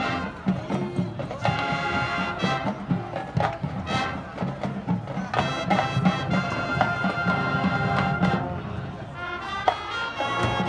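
A marching band playing: brass chords held over drums and percussion strikes.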